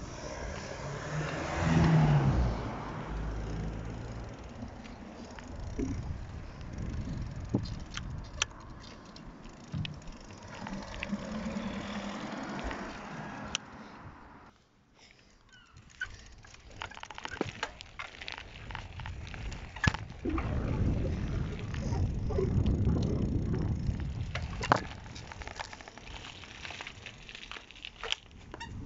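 Bicycle ridden over pavement: tyre rolling noise and wind rumbling on the phone microphone, swelling and easing, with scattered clicks and rattles from the bike. The noise drops briefly about halfway through.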